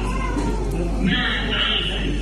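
A woman's high-pitched wailing in grief, loudest from about a second in, over background music.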